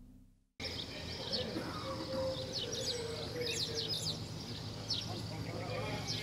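Small birds chirping in short, repeated calls over a steady outdoor background, cutting in suddenly about half a second in after a brief silence.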